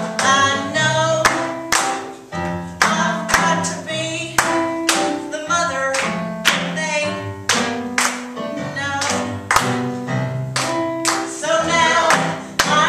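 A song sung live on stage over instrumental accompaniment: a sung melody over held notes, punctuated by sharp struck accents every second or so.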